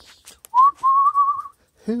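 A person whistles once to a puppy: one short note that rises and then wavers for about a second.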